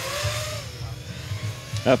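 Racing quadcopters' electric motors whining in the background, a single faint, gently wavering tone over an even hiss, before the commentary resumes near the end.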